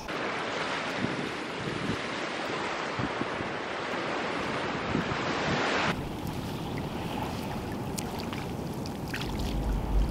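Sea surf washing on a beach, with wind on the microphone. About six seconds in, it cuts suddenly to a quieter wash of shallow water at the shore.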